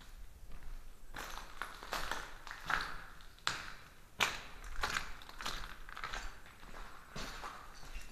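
Footsteps on a tiled floor strewn with rubble and broken fragments, in an irregular stream starting about a second in.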